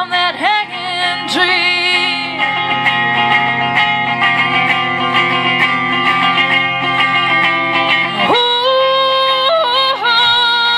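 A woman singing live to her own electric guitar. Her voice slides between notes in the first couple of seconds, then the guitar chords ring on through the middle, and she comes back in with long held notes near the end.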